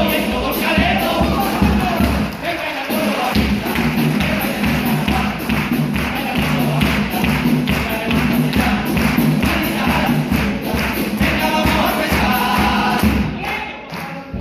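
A Cádiz chirigota's band playing a lively carnival rhythm: a bass drum beating steadily with sharp snare strokes and strummed guitars. The group sings in chorus at the start and again near the end.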